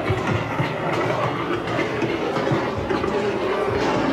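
Loud, continuous clattering and rumbling from a haunted-house soundscape, with a faint held musical drone underneath.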